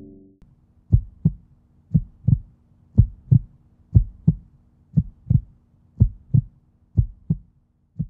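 Heartbeat sound effect in a music intro: pairs of low thumps about once a second over a faint steady hum, just after the ring of a gong dies away at the start.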